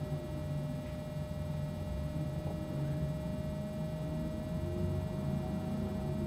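Room tone: a steady low hum with a faint, steady high tone above it, and no distinct events.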